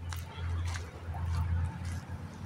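Wind buffeting the microphone outdoors: a low, uneven rumble that swells and dips.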